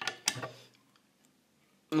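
A few sharp clicks and knocks with a short ringing tail in the first half-second, from the metal parts of a freshly assembled hookah being handled.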